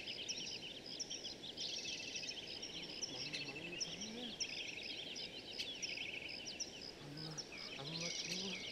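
Small birds chirping in a dense, continuous chorus of quick, high twittering calls.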